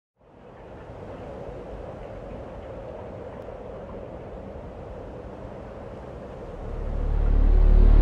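Opening soundtrack: a steady, noisy drone with a faint hum fades in, then a deep bass rumble swells up and grows much louder about six and a half seconds in.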